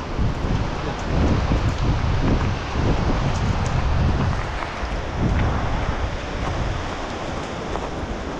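Wind gusting on the microphone, rumbling in uneven surges, over the steady rush of a mountain stream.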